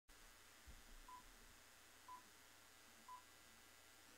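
Near silence broken by three faint, short electronic beeps of one pitch, evenly spaced about a second apart.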